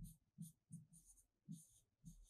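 A pen writing on a board: a string of short, faint strokes, about three a second, as letters are written.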